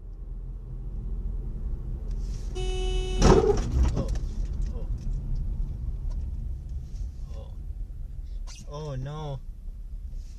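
Car cabin road noise from a dashcam, with a short single-note car horn blast about a quarter of the way in, cut off by a loud sharp sound. A voice exclaims briefly near the end.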